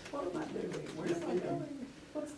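Quiet murmured voices, soft and indistinct, in a small room.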